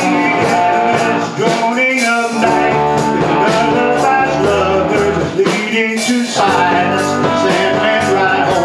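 Live rock band playing: a man singing lead over electric guitars, bass, drums and keyboard, with a steady drum beat.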